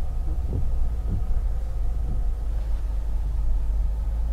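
Steady low rumble of a car's engine and tyres heard from inside the cabin as it creeps along a snow-covered road, with a few faint soft knocks.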